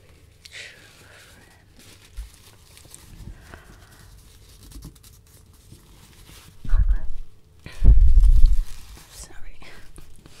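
Close hand and knit-sleeve movement brushing over the microphone: soft faint rustles, then two loud, deep rubbing rumbles about seven and eight seconds in.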